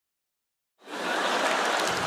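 Dead silence for almost a second, then a steady, even hiss of background noise that holds at one level.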